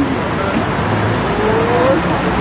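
Steady street traffic noise, with a motor vehicle passing and low crowd voices underneath.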